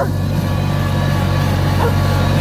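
Kioti CK2610 compact tractor's three-cylinder diesel engine running under full throttle while climbing a steep grade, its fuel screw backed out two turns for more power. It holds a steady note at around 2000 rpm without bogging down.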